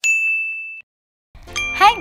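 A single bright chime, a 'ding' sound effect, strikes at the start and rings on one high note for under a second before it cuts off. After a short silence, music and a woman's voice start near the end.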